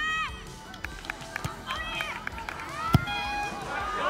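Youth football match: high-pitched shouts from the players, a few light knocks of feet on the ball, and one sharp, loud kick of the ball about three seconds in.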